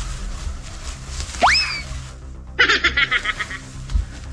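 Edited intro sound effects over background music: a cartoon-style rising 'boing' glide about a second and a half in, then a rapid warbling trill lasting about a second.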